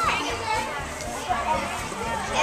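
Children's voices: several children talking over each other in indistinct chatter.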